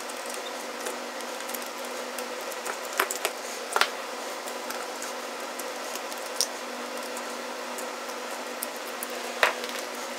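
Light clicks and taps of electrical receptacles and stiff copper wire being handled on a workbench. A few sharp clicks come about three to four seconds in and one near the end, over a steady background hum.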